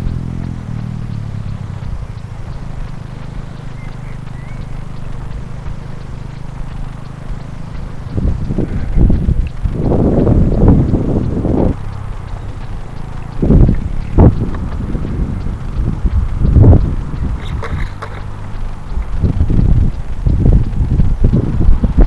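A low, steady engine drone fading away over the first several seconds, then irregular gusts of wind buffeting the microphone with loud low rumbles.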